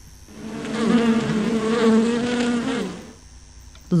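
Bees buzzing, a sound effect: one steady buzz that swells in just after the start and fades out about three seconds in.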